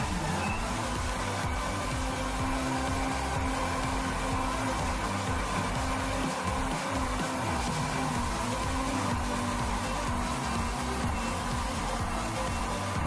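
Electric countertop blender running and chopping chilies and garlic, its motor picking up speed as it starts and then holding a steady whine, with background music underneath.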